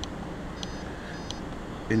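GreenSmart 2 gas fireplace remote giving two short, high beeps, about two-thirds of a second apart, as its thermostat button is pressed to cycle through the thermostat modes.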